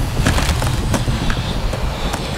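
Dense rumbling noise with many small knocks and clicks throughout, as small hard pieces clatter down stone steps.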